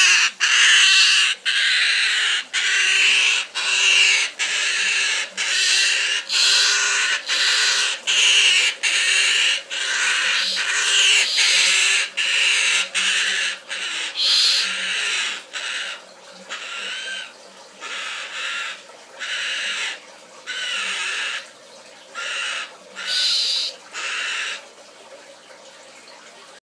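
A baby umbrella cockatoo calling over and over, about one call a second, each call a short noisy burst with a brief break between. In the second half the calls grow quieter and further apart.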